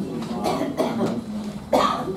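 A man coughing and clearing his throat close to a handheld microphone: a few short bursts, the loudest near the end.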